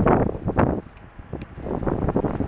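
Gusty wind buffeting the camera's microphone in irregular blasts, easing briefly about a second in, as the storm's effects arrive.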